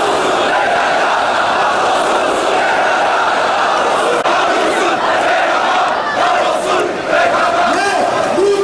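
A large marching crowd shouting and chanting slogans together, a dense, loud, continuous mass of voices.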